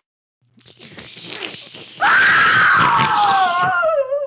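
A long, loud scream that falls steadily in pitch, starting about halfway through, preceded by a rising rushing noise.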